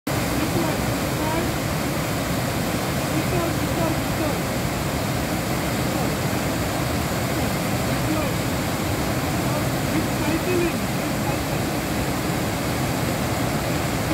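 River water pouring over a low, wide rocky cascade: a steady, unbroken rush of falling and churning water.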